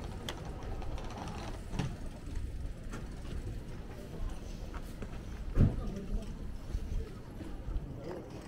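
Busy shopping-street ambience: indistinct voices of passersby over a steady low rumble, with one brief louder sound a little past halfway.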